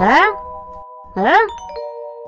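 Cartoon sound effects: two short upward-sliding pitched calls about a second apart, each leaving a steady bell-like chime chord ringing on.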